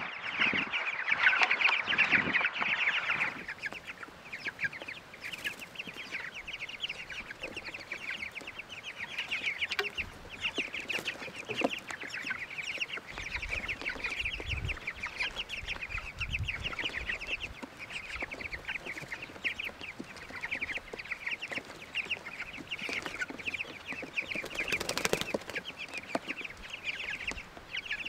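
A flock of young chickens peeping and cheeping continuously in quick short calls, busiest in the first few seconds as they crowd around cantaloupe, with a short louder noise near the end.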